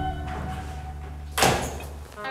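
A door shutting with a single sharp knock about one and a half seconds in.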